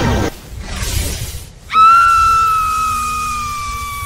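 Magic-spell sound effect: a low rumbling whoosh, then, near the middle, a sudden bright ringing tone that slowly sinks in pitch and fades, over background music.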